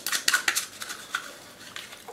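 A rapid run of sharp crackling clicks that thins out and dies away after about a second. The mother wonders whether it is a firework.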